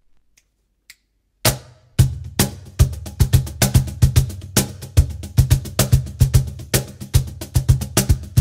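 Meinl cajon played by hand and recorded through two Shure SM57s, one at the front plate and one at the back, plus two overhead mics. After a near-silent first second and a half comes a single stroke, then from about two seconds in a fast, steady groove of deep bass tones and sharp slaps.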